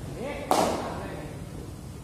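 A cricket ball struck by a bat, one sharp crack about half a second in that rings on briefly in a large indoor net hall.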